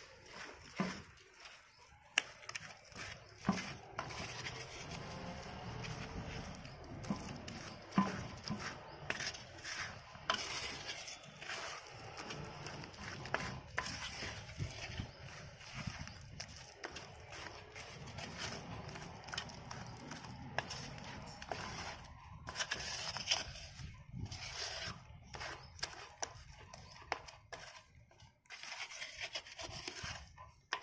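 Wet cement slurry mixed with damp-proofing liquid being worked by hand in a round mixing basin: continuous squelching and scraping, with scattered sharp knocks.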